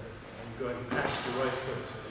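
A man's voice speaking in a large hall, with one short sharp sound about a second in.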